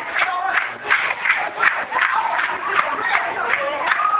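Church congregation in a praise break: many voices calling out together over rapid, irregular claps and stomping feet.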